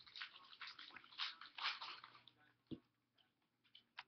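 Trading cards and their packaging being handled: quick, irregular crinkling and rustling for a couple of seconds, then a single knock and a few faint clicks.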